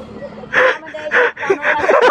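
A woman laughing in short breathy bursts, starting about half a second in.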